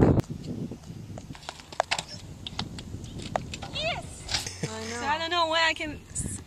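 A person's voice making short wordless vocal sounds in the second half, one rising sharply in pitch, over quiet outdoor background with scattered faint clicks.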